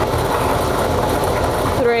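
Lottery ball draw machine running, a loud, steady, dense mechanical noise as it mixes the numbered balls.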